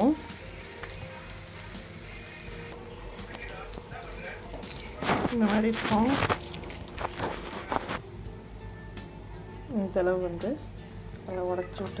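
Oil sizzling under frying onions in a steel pan for the first few seconds. Then a voice comes in three short phrases over background music, with a few light clicks in between.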